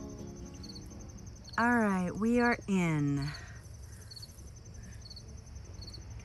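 Crickets chirping outdoors: a high, even chirp repeating a little less than twice a second over a steady low background noise. A short gliding human vocal sound breaks in about a second and a half in.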